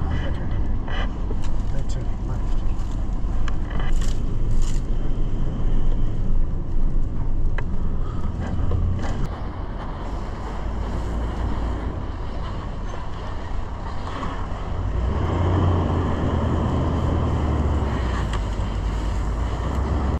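Four-wheel drive moving slowly over rough ground, its engine and running gear giving a steady low rumble. A few sharp knocks come through, two close together about four seconds in.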